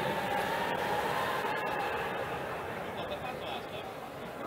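Background noise of an indoor athletics arena during a race: a steady murmur of distant crowd voices and hall noise that slowly fades, with a few faint clicks.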